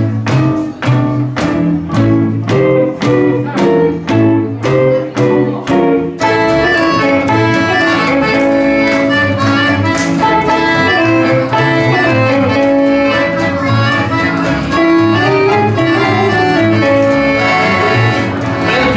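Small acoustic swing band playing live: upright bass and acoustic guitars chop out a beat of about two strokes a second, then an accordion comes in with held chords about six seconds in, filling out the sound.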